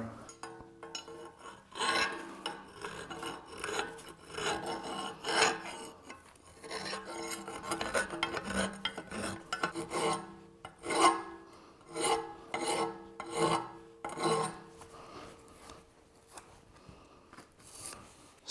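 Hand file scraping in short, irregular back-and-forth strokes on the inside edge of a thick-walled steel pipe end, taking off the burr left by machining the bore; the strokes fade out over the last few seconds.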